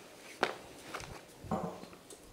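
Quiet room with handling and movement sounds: a sharp knock about half a second in, then a few softer knocks and shuffles, the kind made as a questioner in the audience gets up and takes a microphone.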